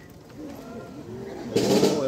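Soft, wavering crowd voices during an exhibition rifle drill, then a loud, sudden percussive hit about one and a half seconds in.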